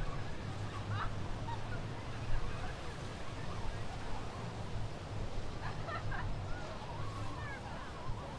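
A steady low rumble of sea and wind, with short bird calls, mostly in the second half.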